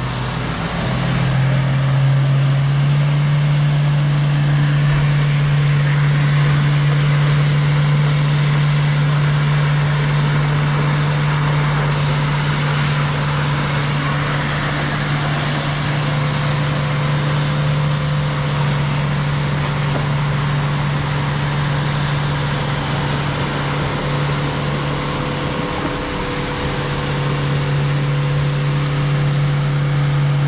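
Mahindra Thar's engine held at steady revs while its wheels spin in deep wet sand, the vehicle stuck and digging in. The revs ease briefly near the end, then pick up again.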